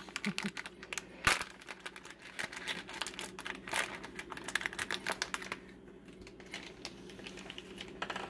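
Plastic minifigure blind bag crinkling as it is torn open and handled, with small plastic LEGO pieces clicking against each other; one sharper click about a second in, and the clicking thins out past halfway.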